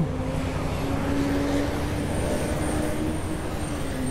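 Street traffic noise with a vehicle engine's steady hum that dips in pitch near the end, and a faint high whine from about halfway in.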